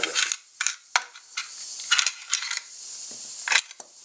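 Steel parts of an SKB Ithaca 900 shotgun being handled and knocked together, giving a string of irregular sharp metallic clicks and clinks.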